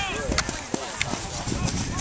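Several voices shouting and calling out at once across an open playing field, with a few sharp clicks and a low rumble of wind on the microphone.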